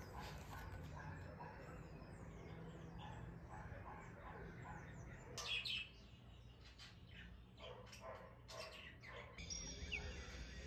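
Faint chirping of small birds: many short, quick calls, with a louder burst about five and a half seconds in, over a low steady hum.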